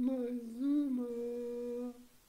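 A person's voice humming one sustained note for about two seconds, with a small lift in pitch near the middle, cutting off suddenly just before the end.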